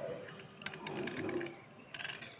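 Cutter blade scraping a wet yellow slate pencil: a quick run of short, gritty scrapes about half a second in, lasting well under a second.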